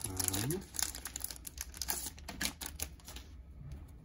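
Plastic trading-card sleeves and top loaders being handled and worked open, giving a quick run of crackles and clicks that stops about three seconds in.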